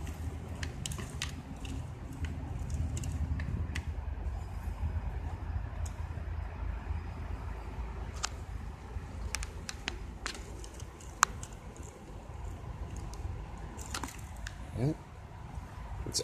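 Scattered small clicks and taps from handling multimeter test probes, wires and clip leads, over a steady low rumble, with one sharper click about eleven seconds in.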